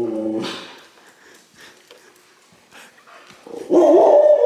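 A dog vocalizing: a low drawn-out grumbling sound that fades about half a second in. After a quiet stretch with faint knocks, a loud rising bark or yowl breaks out near the end.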